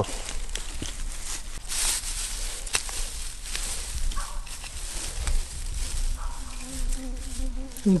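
Dry straw mulch rustling and crackling as hands part it and press garlic cloves into the soil, with a few sharper crackles. A short, steady hum rises near the end.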